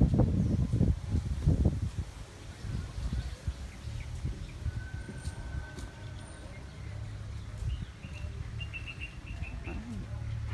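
Birds calling in the trees: one thin steady whistle about five seconds in and a quick run of short chirps near the end. Underneath is a low rumble, loudest in the first two seconds.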